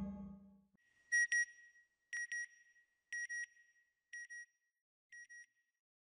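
A held synthesized music chord fades out, then an electronic double beep repeats about once a second, each pair fainter than the last, like a signal fading away.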